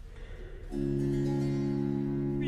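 Faint room noise, then about two-thirds of a second in a baroque continuo chord sounds and is held steady, opening a recitative.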